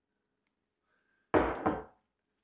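Two quick knocks of kitchenware about a third of a second apart, about a second and a half in.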